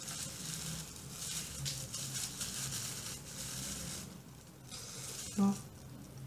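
Plastic-gloved hand rubbing wet hair bleach through the hair, a soft crackling rustle that dies away about four seconds in.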